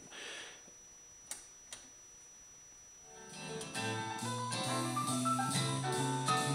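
Music from a record played through a Luxman receiver's rebuilt phono stage into small test speakers. It is brought up from near quiet about three seconds in, after two faint clicks, and then plays steadily with held notes.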